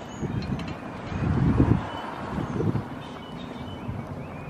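Wind buffeting a handheld phone microphone in uneven low gusts, the strongest about a second and a half in, over steady outdoor background noise.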